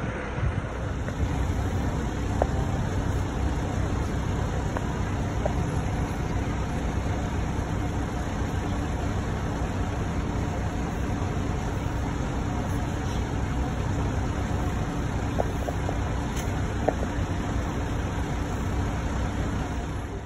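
Steady low rumble of vehicle engines and street traffic, unbroken for the whole stretch, with a faint steady hum.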